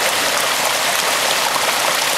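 Steady rush of water: a storm-drain outfall pipe pouring down onto rocks in a small creek, with the creek running over its stones.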